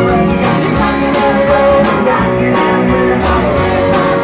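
A live rock band playing: electric guitar over a steady drum beat, with keyboard.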